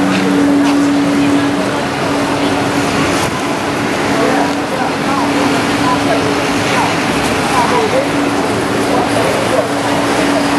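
Busy city street: traffic noise with a steady low hum running through most of it, under indistinct voices of passers-by.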